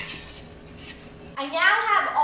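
A wire whisk stirring liquid Jell-O in a stainless steel bowl, with faint scraping and light clicks against the metal. About a second and a half in, a child starts speaking.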